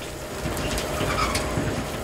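Shredded wood chips pouring steadily into a metal hopper: a continuous rushing hiss over running processing machinery, with a faint steady hum.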